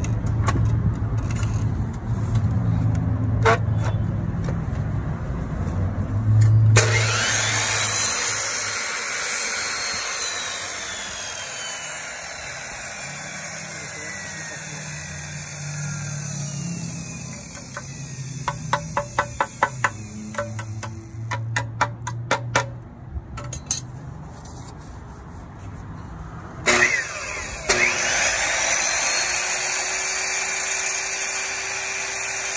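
Ryobi sliding miter saw: the motor whines, and after it is triggered at about seven seconds the blade spins down with a slowly falling pitch for several seconds. A run of rapid sharp clicks follows in the middle, and near the end there is a knock and the saw starts up again with a rising whine.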